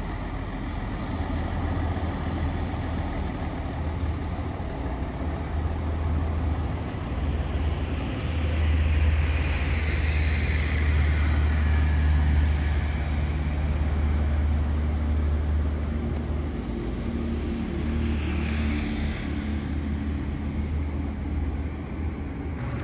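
Diesel engine of a Mercedes-Benz highway coach running as it pulls away and drives off along the road: a deep steady rumble that grows louder about eight seconds in and eases later. Other vehicles pass by twice, once about ten seconds in and again near the end.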